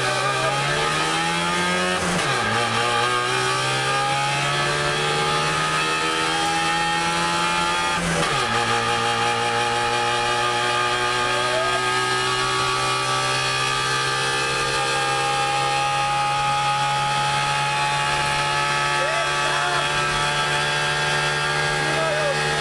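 Rally car engine heard from inside the cabin, pulling hard with its pitch climbing, then dropping sharply at upshifts about two seconds in and again about eight seconds in; after that it runs at a steadier pitch under load.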